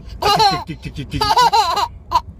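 A baby laughing in two high-pitched bursts of about half a second each, one near the start and one in the second half.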